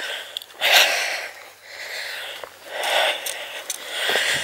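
A person's breathing close to the microphone while walking: two long, audible breaths, one about half a second in and one about three seconds in.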